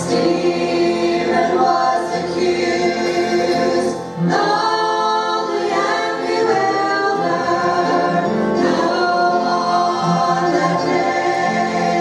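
Gospel quartet of two men and two women singing together into handheld microphones, with a short break between phrases about four seconds in.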